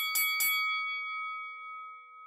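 A bell-like chime sound effect: three quick strikes, then one ringing tone that slowly fades.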